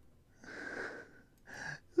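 A person's breath, two quiet, breathy, voiceless exhalations: the first about half a second long, the second shorter near the end.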